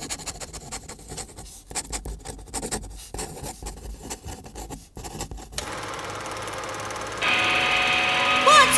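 A pen scratching across paper in quick, irregular strokes for about five and a half seconds. Then a steady electric hum holding several pitches takes over and steps up louder near the end.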